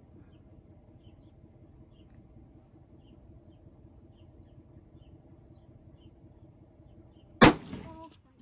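A single rifle shot from a scoped bolt-action rifle on a bipod: one sharp, very loud crack about seven and a half seconds in, with a short ringing tail. Before the shot there is only a steady low background noise with faint ticks.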